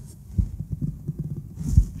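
Low, irregular thumps in the soundtrack, with a quick intake of breath just before speech resumes.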